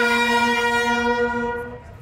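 Brass band holding a long sustained chord that fades out about a second and a half in, leaving a short pause.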